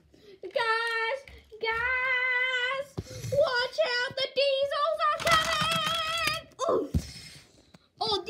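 A child singing a string of long held notes, several of them wavering in pitch, as a dramatic tune.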